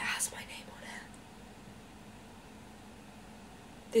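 A woman's whispered, breathy exclamation lasting about a second, followed by low room hiss.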